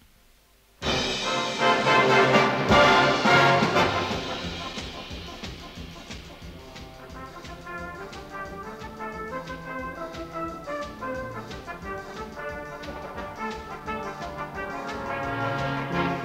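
A full brass band playing. After a brief near-silent pause it comes in loudly about a second in, eases to a quieter passage, and swells again near the end.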